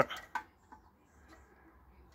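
One sharp click about a third of a second in, then near quiet: a small flasher relay knocking against its metal mounting bracket as it is handled into place.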